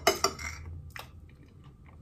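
Chewing a mouthful of soft cream cake, with a few light clicks near the start and another about a second in.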